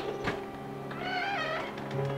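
A door latch clicks and the door's hinges give a short, high, wavering squeak as it swings open, over soft sustained background music.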